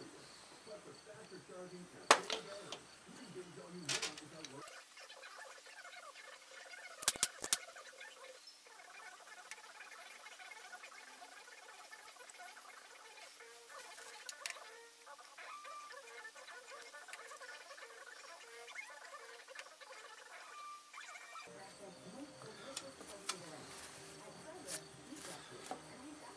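Crankcase parts of a McCulloch Mac 140 chainsaw being handled on a workbench during reassembly: a few sharp clicks and knocks, two of them close together about seven seconds in, over a faint background.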